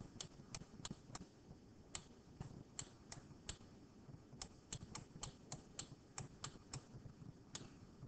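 Faint, irregular clicking of a computer pen input device, a few sharp clicks a second in short runs, as numbers are handwritten stroke by stroke on the screen.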